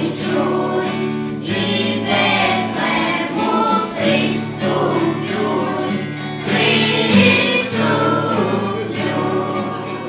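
Children's choir singing a song together, accompanied by a strummed acoustic guitar.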